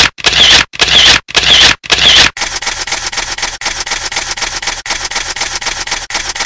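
Loud bursts of harsh noise, about two a second, give way a little over two seconds in to a continuous fast crackling rattle, like edited static effects.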